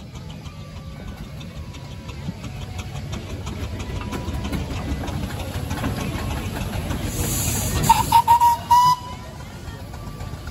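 Steam traction engine running with a low rumble that grows louder, then near the end a burst of steam hiss and three short steam-whistle toots.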